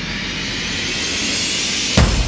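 A rising swell of noise in the soundtrack, building steadily louder and brighter and ending in a sharp hit at the very end: a riser effect in the backing music.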